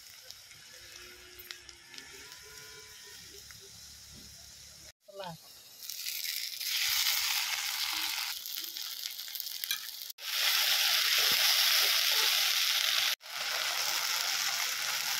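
Oil sizzling loudly as onions and spice paste fry in a kadai over a wood fire. The first few seconds are quieter, then the sizzle comes in strong and breaks off abruptly twice before resuming.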